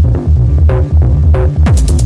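Dark techno track's intro: a throbbing, pulsing bass under short synth notes that repeat about three times a second. Near the end a fast, even hi-hat pattern and falling drum hits come in.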